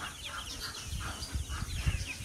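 A flock of ducklings and chicks peeping continuously, many short high peeps following each other several times a second, with some low handling rumble in the second half.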